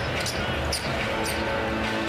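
Live basketball game sound in an arena: a ball being dribbled up the court over crowd noise. Arena music with held tones comes in under it from about a second in.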